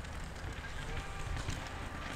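Steady, fairly quiet outdoor background with faint distant voices and a low rumble, and no close-up bike noise.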